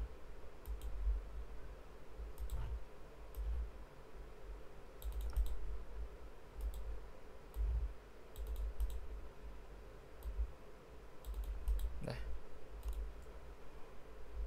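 Computer mouse clicking: single clicks and quick clusters of clicks at irregular intervals, over faint low thuds.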